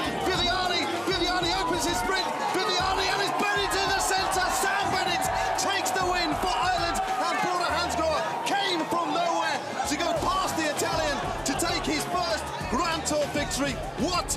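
Excited sports commentary, shouted fast, over background music with a thumping beat.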